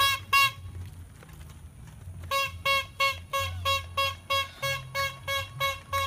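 A small hand-squeezed horn on a street vendor's tricycle cart tooting: two quick toots, then after a pause of about two seconds a steady run of short toots, about three a second.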